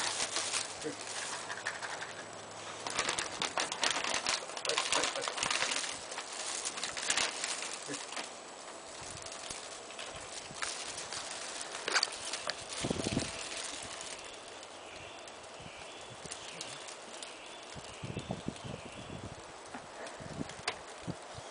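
Plastic treat packaging rustling and crinkling in short, irregular bursts as it is handled and opened, with dogs snuffling at it. There is a single knock about 13 seconds in.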